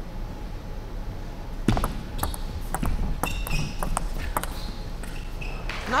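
Table tennis rally: a quick run of sharp ball clicks off rackets and the table over about three seconds, with a few short high squeaks in between.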